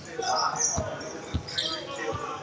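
A basketball bouncing twice on a hardwood gym floor, about half a second apart, with short sneaker squeaks on the boards and players' voices in the hall.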